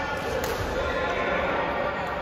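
A badminton racket strikes a shuttlecock once, a sharp crack about half a second in, ringing in a large echoing sports hall over steady background voices.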